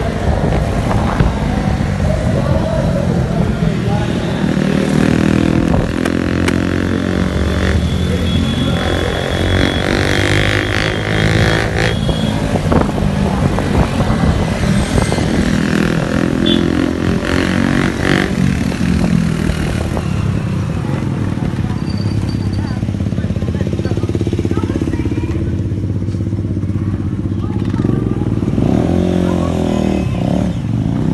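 Motorcycle engine running while riding through traffic, its pitch rising and falling with the throttle, with wind noise on the microphone.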